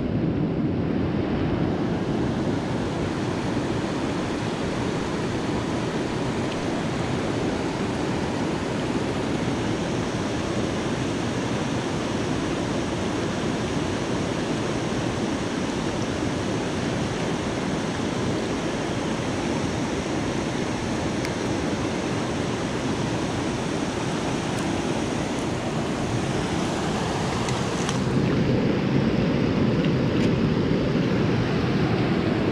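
Creek water rushing over rocks below a small spillway: a steady, even rush that grows louder and deeper near the end.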